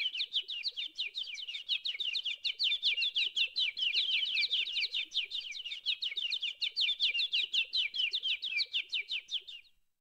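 A bird chirping in a fast, even series of short downward chirps, about six a second, stopping shortly before the end.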